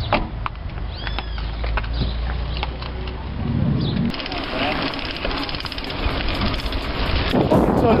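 A low rumble with scattered clicks for the first half. About four seconds in it gives way to wind on the microphone and tyre noise from a mountain bike rolling on a dirt road, with voices near the end.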